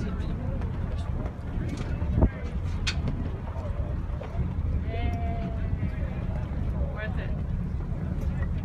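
Steady low rumble of a tour boat's engine, with wind on the microphone and faint passenger chatter.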